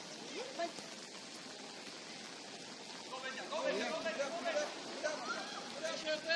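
Distant voices of spectators and players calling out across a soccer field over a steady hiss of light rain. The first half is quieter; the voices pick up and grow louder about halfway through.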